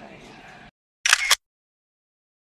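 A camera shutter click, short and sharp in two quick parts, about a second in. It comes just after the faint outdoor background sound cuts off.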